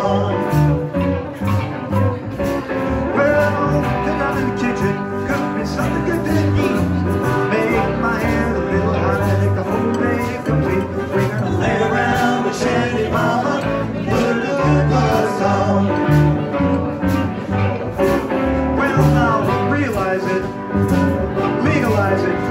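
Live blues band playing an instrumental break: red hollow-body electric guitar, upright double bass and drums keeping a steady beat, with a harmonica played into the vocal mic.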